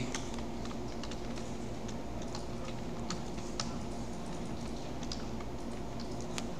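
Typing on a computer keyboard: a run of irregular keystroke clicks, over a steady low hum.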